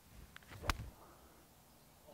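Eight iron striking a teed golf ball: one sharp, crisp click a little under a second in, after a faint tick and swish of the downswing. It is the sound of a cleanly struck iron shot.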